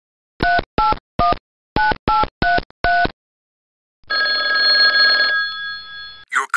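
A touch-tone telephone dialing seven digits, each a short two-tone beep, then after a second's pause one long telephone ring that fades out near the end.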